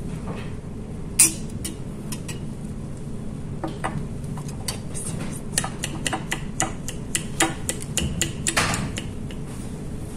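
Aluminium foil crinkling and crackling as it is folded and pressed over the mouth of a glass Erlenmeyer flask. There is one sharp snap about a second in, then a dense run of crackles in the second half, over a steady room hum.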